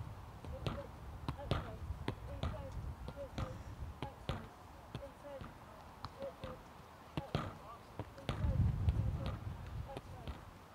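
A football is kicked against a boarded wall in a steady rhythm of soft touches: a run of sharp knocks, roughly one to two a second, from foot striking ball and ball striking the boards. There is a brief low rumble about eight and a half seconds in.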